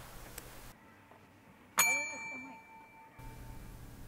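A single ring of a desk service bell, struck once about two seconds in, its bright tone fading away over about a second and a half.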